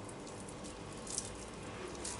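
Faint soft squishing of hands pressing and rolling a sticky mixture of grated carrot, crushed biscuits and walnuts into balls, with a small click about a second in.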